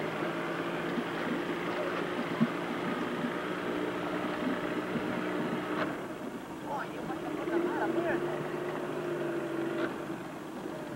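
Motorboat engine idling steadily, with a few faint voices calling out about two-thirds of the way in.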